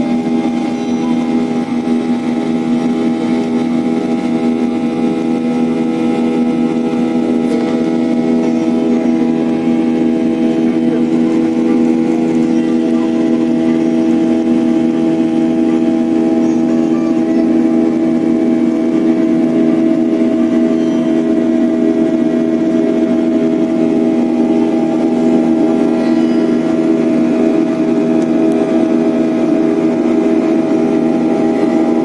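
Steady drone of an airliner's engines heard inside the passenger cabin during the climb after takeoff, made of several constant hum tones with a faint regular pulsing.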